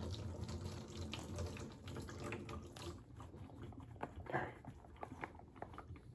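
Hot water poured from a plastic cup over a leather baseball glove, trickling and dripping off the leather, with a brief louder splash a little past the middle and thinning out toward the end. This is the hot-water break-in treatment, soaking the fingertips and lacing to soften the leather.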